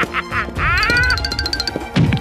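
Cartoon background music with a short quack-like sound effect about a second in, overlapped by a quick run of high ticks.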